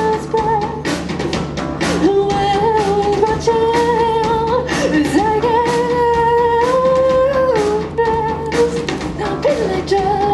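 A rock band playing live: a woman singing long held notes that slide between pitches, over electric guitars and a drum kit.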